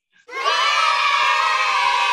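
A group of children shouting a long, held "Yay!" cheer, a stock sound effect. It starts about a third of a second in and stays steady and loud.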